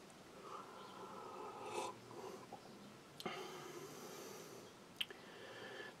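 Faint sipping of mint tea from a mug, with breathing and a small click near the end.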